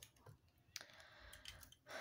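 Near silence: room tone with a few faint clicks and a soft hiss lasting about a second in the middle.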